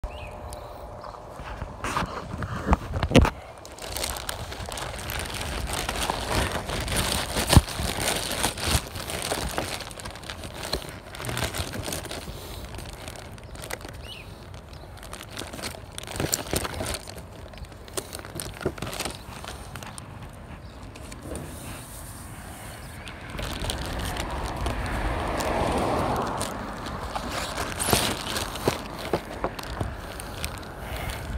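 Phone-microphone handling noise with knocks, clicks and crinkling plastic. Near the end a car drives past, swelling and fading over a few seconds.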